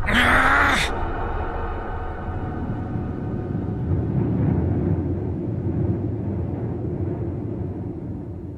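A short, loud rush of noise at the start, then a low, steady, ominous drone of background score with faint held higher tones.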